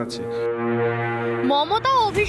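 A low, steady horn-like tone held for about a second and a half, an edit transition sound in a TV news bulletin, then a voice comes in near the end.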